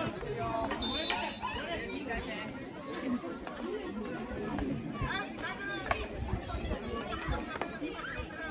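Overlapping voices of players and spectators calling out and chattering, with a few sharp clicks of field hockey sticks striking the ball, the clearest about six seconds in.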